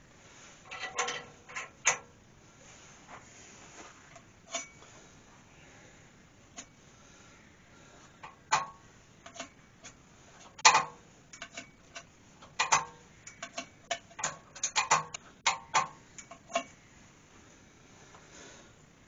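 Irregular sharp clicks and short scratchy strokes from marking out an ash bowl on a stopped lathe: a pencil drawn along the tool rest across the rim while the bowl is stepped round on the lathe's 24-position indexing plate. The clicks are sparse at first and come thicker in the second half.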